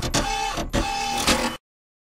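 A mechanical rattling, whirring sound effect with quick clicks, lasting about a second and a half, then cutting off suddenly into dead silence.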